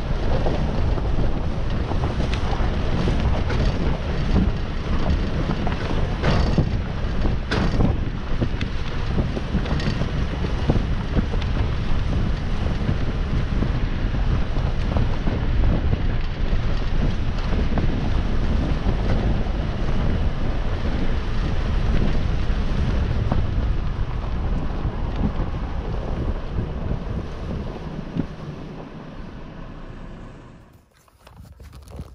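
Wind buffeting the microphone over the low rumble of a 2020 Toyota 4Runner TRD Off Road driving slowly down a dirt trail, with two sharp knocks about six and eight seconds in. The noise dies away over the last few seconds as the truck slows.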